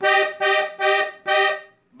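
Diatonic button accordion playing the same note four times in a row, each press short and detached, about two a second, with the bellows pushed in.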